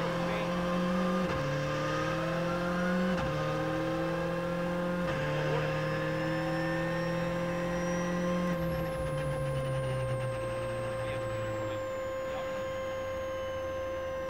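Skoda Fabia R5 rally car's turbocharged four-cylinder engine heard from inside the cabin, accelerating hard with three quick upshifts, each dropping the pitch. Past the stage finish it lifts off, and the engine note and a high whine fall away to a low steady run. A steady electrical hum runs underneath.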